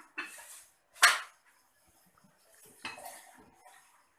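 Metal jigger and cocktail shaker tins clinking as orange juice is measured and tipped in: one sharp metallic clink about a second in, then a few lighter knocks and clatter near the end.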